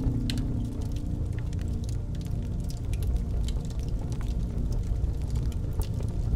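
Fireplace crackling: scattered sharp pops over a steady low rumble of the fire, while the last harp chord fades away over the first few seconds.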